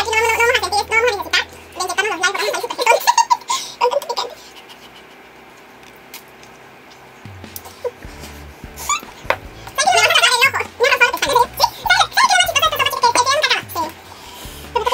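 Women laughing and giggling over steady background music, in two bouts: one in the first few seconds and another in the last few, with a quieter stretch between them.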